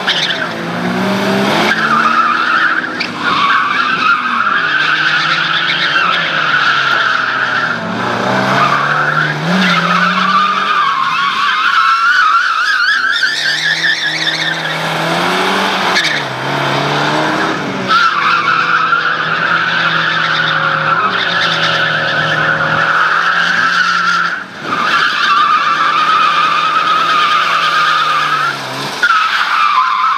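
Lada 2101 rally car's tyres squealing as it slides through tight turns on tarmac, over its four-cylinder engine revving up and down. The squeal holds for long stretches and breaks off briefly between slides.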